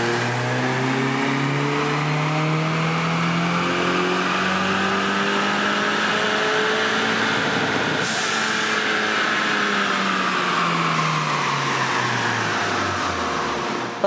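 Ford Mustang EcoBoost's turbocharged 2.3-litre four-cylinder making a full-throttle dyno pull through one gear, breathing through a Roush closed-box cold air intake. The revs climb steadily for about eight seconds to near 7,000 rpm, with a short rush of air as it lets off. The pitch then falls as the engine winds down.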